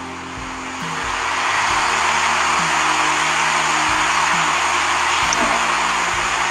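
Background music: a sustained low drone under a loud, even hiss that swells in over the first two seconds and then holds steady.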